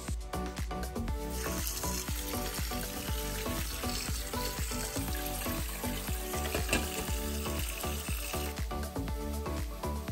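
Diced vegetables frying in olive oil in a pan, a steady sizzle that comes in about a second in and eases off near the end, over background music.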